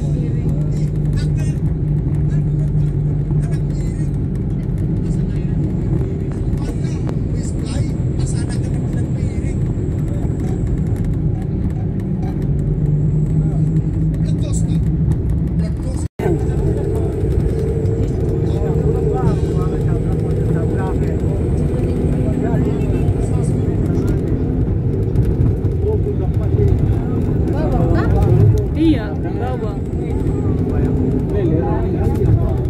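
Steady engine and road rumble of a moving vehicle heard from inside, with a brief dropout about halfway through.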